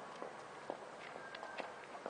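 Faint footsteps on a paved street: a few light, irregular taps over quiet outdoor background.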